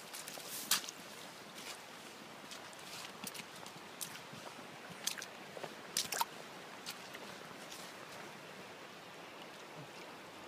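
Footsteps crunching and rustling through dry leaves and brush, irregular steps with a few sharper snaps, the loudest about a second in and again around six seconds. Under them a steady rush of river water.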